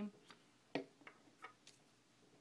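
A few faint clicks and taps from handling a glue stick and a small paper label on a wooden table, the sharpest about three-quarters of a second in.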